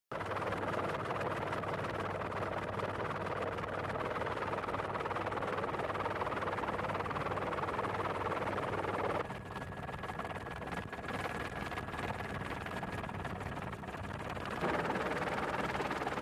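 Steady rushing noise with a low hum, the engine and rotor noise heard aboard the aircraft filming from the air. About nine seconds in it drops and changes character, and a faint thin high tone is held for several seconds.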